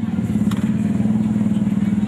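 A small engine running steadily at a constant speed: a loud low hum with a fast, even pulse. A single click about half a second in.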